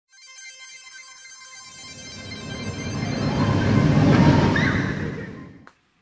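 Intro music sting: a shimmer of high, bell-like ringing tones, then a whoosh that swells to its loudest about four seconds in and fades away just before the end.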